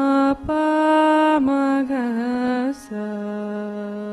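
A girl singing a Carnatic classical vocal phrase alone: long vowel notes held steady, joined by gliding ornaments that bend the pitch. Near the end she settles onto a lower note and holds it steady.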